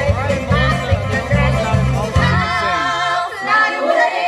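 A woman singing a country-bluegrass song over a karaoke backing track played through PA speakers, with a pulsing bass line. In the second half she holds one long wavering note while the bass drops out.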